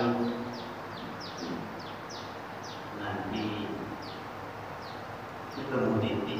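A bird chirping over and over in short, falling high notes, about two or three a second, with a faint man's voice heard briefly at the start, about three seconds in, and near the end.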